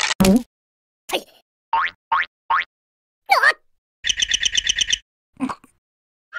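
Cartoon sound effects: a run of short, separate pitch glides, mostly rising, then a rapid pulsing trill lasting about a second, then one more short blip.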